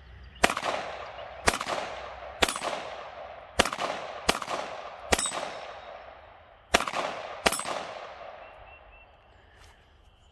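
KelTec CP33 .22 pistol firing eight shots at an uneven pace, two of them in quick succession about four seconds in, each crack trailing off in an echo.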